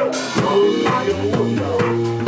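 Live band playing an instrumental groove: a drum kit beating steadily over two electric bass guitars holding deep repeated notes, with a bright crash right at the start.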